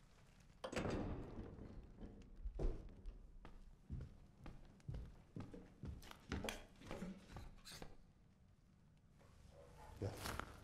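Footsteps crossing a room, a run of soft knocks about every half second that stop shortly before the end, after a louder thump about a second in.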